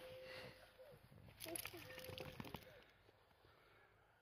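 Near silence, with a faint distant voice holding two short notes and light rustling between them.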